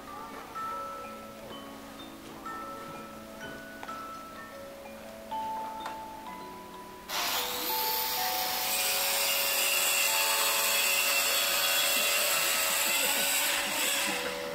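A karakuri automaton clock playing a chiming, music-box-like melody, one note at a time. About seven seconds in, a loud steady hiss starts suddenly over the tune and cuts off shortly before the end, while the melody carries on beneath it.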